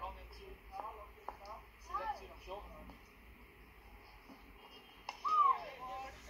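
Voices of cricket players calling out on the field, with one loud shout about five seconds in.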